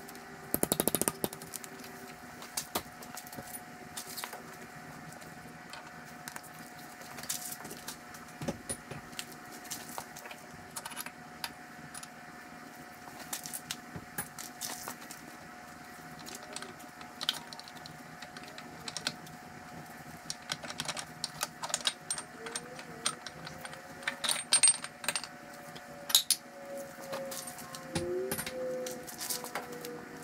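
Scattered metallic clinks and knocks of steel gears and parts being worked off the countershaft inside an IH 1066 transmission case, the loudest about a second in and again a few seconds before the end, over a faint steady hum.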